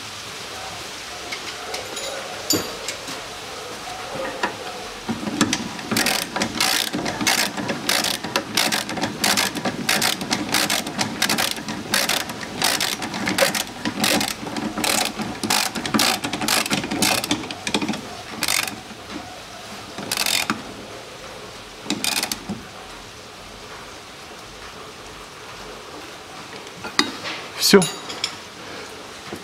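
Hand ratchet wrench clicking in repeated strokes as it tightens the nut on the bolt of a newly fitted rear trailing-arm bushing. It goes at about two clicks a second for some twelve seconds, then gives a few last single clicks.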